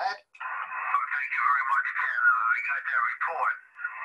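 A man's voice received over amateur radio and heard through the transceiver's speaker: thin, narrow-band radio audio that starts just under half a second in after a brief gap, with a short dip near the end.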